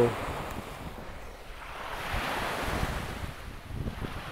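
Small waves breaking and washing up the beach, swelling to a louder wash in the middle and then easing, with wind buffeting the microphone.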